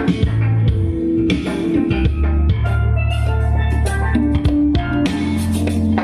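Music with drums and deep, sustained bass notes, played loud through an NR702U amplifier kit driving a cheap speaker cabinet as a listening test of the amp.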